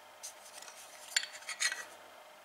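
Faint handling of a steel plane iron and its chip breaker turned over in the hand: a few light metallic clicks and scrapes, the sharpest a little past halfway.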